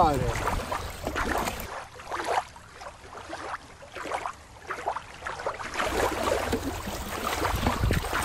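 Shallow river water lapping and sloshing at a rocky shore, with wind rumbling on the microphone. A quieter, duller stretch of water sound fills the middle, and the water is splashed near the end as a toy is dipped in.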